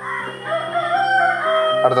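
A single long call from a bird, held for about a second, over steady background music.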